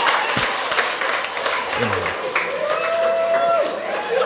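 An audience applauding steadily, a dense patter of many hands clapping, with a few voices mixed in.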